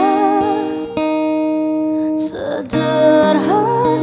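A woman singing a slow, emotional ballad live, her voice wavering with vibrato over a sustained accompanying chord. There is a short break about two seconds in, then she comes back in with a rising phrase.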